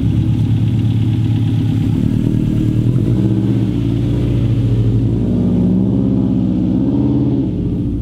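The all-wheel-drive Miata rally car's engine running as the car pulls out at low speed, with brief gentle rises in revs about three seconds in and again from about five and a half seconds.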